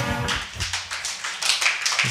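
Audience applauding at the end of a song, with many hands clapping.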